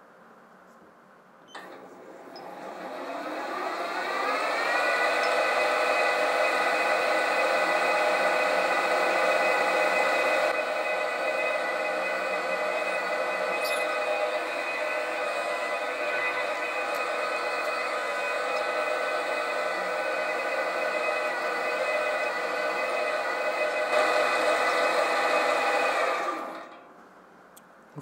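Lathe motor and spindle whine, rising in pitch as it spins up about two seconds in, then running steadily while a stubby 6 mm drill bit in a collet chuck drills into an aluminium block, and dying away near the end. The footage is sped up four times.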